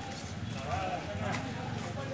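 Indistinct voices of people talking in the background, with a few light knocks or clicks.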